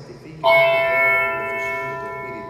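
A small altar bell struck once about half a second in, its clear high tones ringing on and slowly fading. In the Mass it marks the epiclesis, as the priest holds his hands over the gifts.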